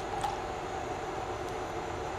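Soft, steady swishing of a silicone spatula stirring a thin milk-and-cream mixture in a glass bowl, with a couple of faint ticks. The cream base is being dissolved in cold milk so that no lumps form.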